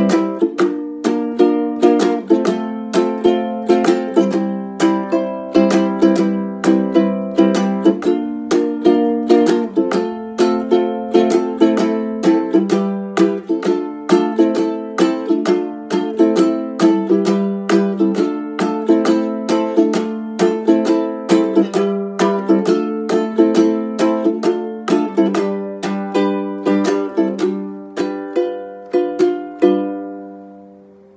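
Ukulele strummed in a steady rhythm with no singing, the chord changing every couple of seconds.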